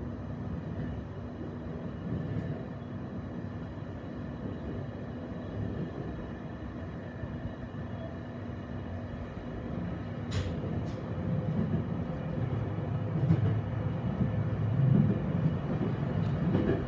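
Electric local train running, heard from inside the passenger car: a steady low rumble of wheels on rail with a faint steady hum, a few sharp clicks about ten seconds in, and the rumble growing louder near the end.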